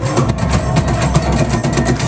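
Live rock band playing loudly: a dense, noisy full-band passage with fast, busy drumming over heavy bass.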